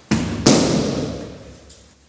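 A person hitting the mats in a breakfall after an aikido throw: two heavy thuds about half a second apart, the second the louder, then a noise that fades away over about a second.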